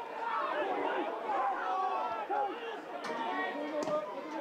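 Football stadium crowd: many voices talking and shouting over one another, with a couple of short sharp knocks near the end.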